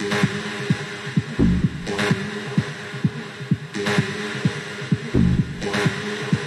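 Techno playing from a DJ mix: a steady kick drum about twice a second under a sustained synth tone, with a sharper full-range hit about every two seconds.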